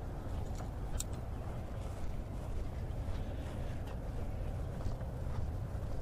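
Steady low outdoor rumble with a faint click about a second in.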